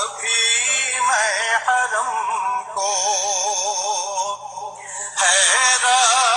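Urdu devotional naat: a solo voice sings long held notes with a steady waver. It falls away briefly about four and a half seconds in, then comes back strongly a little after five seconds.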